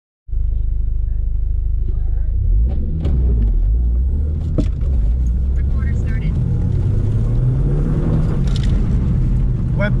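2002 Audi TT's turbocharged 1.8-litre four-cylinder, heard from inside the cabin through a non-resonated Milltek stainless cat-back exhaust, running at idle and then pulling hard from a standing launch about two and a half seconds in. Its pitch climbs as the car gathers speed, with a brief dip about four and a half seconds in.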